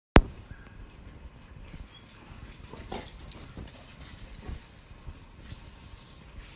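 A single sharp click right at the start, then quiet sounds of a dog moving about.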